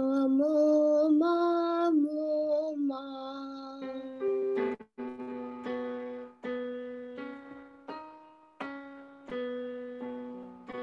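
Piano accompaniment for a vocal warm-up exercise: a voice holds a few notes stepping up and back down over the piano for about three seconds, then the piano alone strikes notes roughly every 0.7 s, each fading away.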